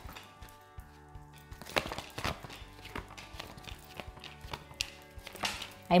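Tarot cards being dealt and laid down on a table, a scatter of short light taps and slaps, over quiet background music with held tones.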